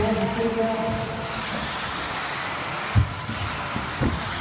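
Hall ambience at a radio-controlled off-road car race: a steady hiss of the model cars running on the track, with one thump about three seconds in. Background music over the PA sounds through the first second or so.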